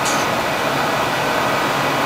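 Steady, even rushing hiss of running laboratory machinery at the synchrotron beamline, unchanging throughout.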